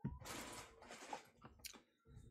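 Faint rustling of cards and packaging being handled and put away, a short crinkly rustle at the start followed by a few light clicks and taps.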